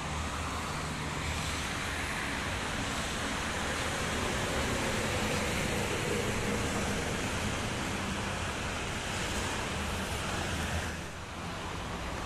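Steady motorway traffic noise with a large coach passing close by, the sound swelling to its loudest around the middle and falling away near the end.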